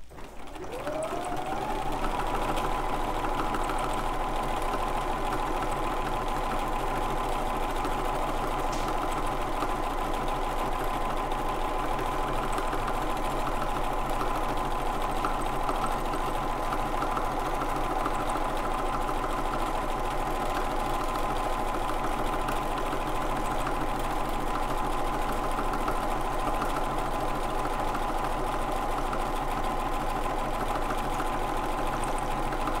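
Bernina domestic sewing machine running at speed while free-motion quilting. Its motor whine rises as it speeds up over the first two seconds, then it runs steadily.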